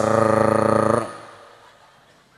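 A man's voice holding one long, steady chanted vowel for about a second, the drawn-out last syllable of a mock dhikr, then dying away.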